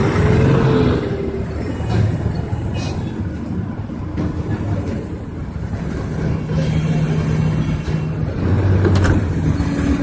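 Street traffic at a bus stop: a bus and nearby vehicles idling and running with a steady low rumble, faint voices of a crowd mixed in, and a brief sharp sound about nine seconds in.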